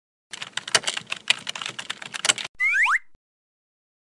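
Computer-keyboard typing sound effect: a quick run of key clicks for about two seconds, then a brief rising sweep and a single click.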